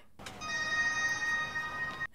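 A steady high electronic tone from the film's audio, several pitches held together, starting just after the beginning and holding without a break.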